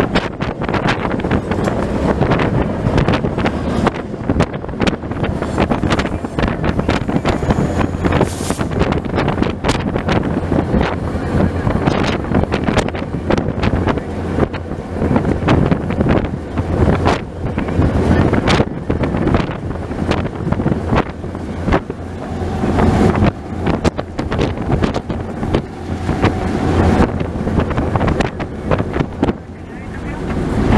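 A moving diesel-hauled train heard from on board, with wind buffeting the microphone over the locomotive's steady low drone. Frequent, irregular clicks and knocks come from the wheels on the rails.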